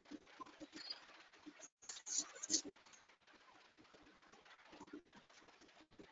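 Faint low bird cooing, repeated at irregular intervals, over an online meeting's audio feed, with a short burst of rustling noise about two seconds in.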